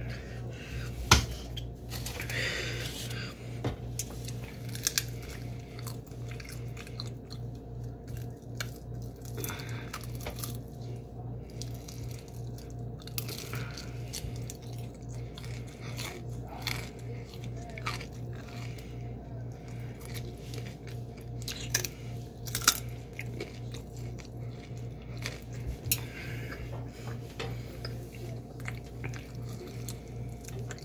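Close-up chewing and biting into breaded fried chicken, with crisp crunches and wet mouth sounds scattered through; a sharp knock about a second in. A steady low hum runs underneath.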